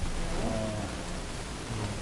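Steady hiss of room tone in a meeting-room recording, with a brief faint murmured voice about half a second in.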